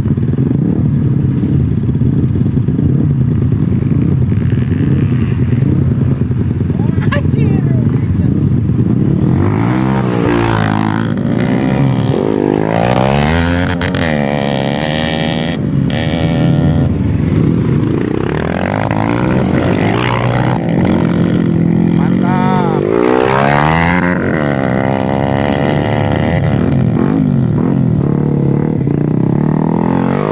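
Trail motorcycle engines running close by: a steady low drone for about the first ten seconds, then revving up and down again and again as the bikes climb a steep dirt track.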